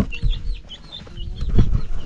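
Chickens clucking amid a string of short high chirps, with a few low thumps in the second half.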